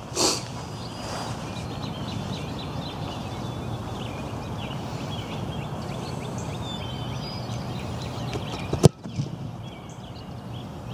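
A football kicked off a tee: one sharp thud of the boot striking the ball about nine seconds in, over steady outdoor background noise with birds chirping.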